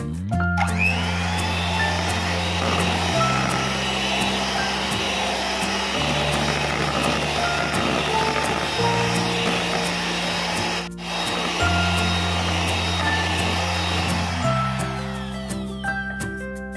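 Miyako electric hand mixer running on low speed, its beaters churning sifted flour into butter-and-egg cake batter. It spins up just after the start, briefly cuts out about eleven seconds in, and winds down near the end.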